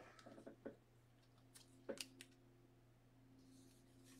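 Near silence: a low steady hum in a small room, with a few faint ticks and a couple of short sharp clicks about two seconds in.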